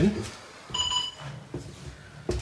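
A single short electronic beep, one steady tone lasting about half a second, near the middle.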